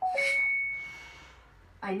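Electronic ding from Google Assistant's game: a quick two-note blip, then one high ringing tone that fades away over about a second. The assistant's voice starts again near the end.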